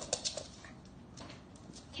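Small dog's claws clicking and tapping on a hard wood floor as it scrambles, a few light taps in the first half-second and another near the end, with quiet in between.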